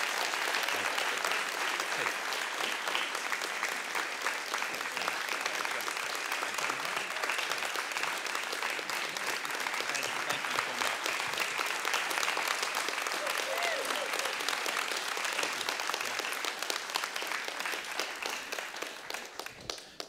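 A congregation applauding steadily, the clapping thinning out and fading near the end.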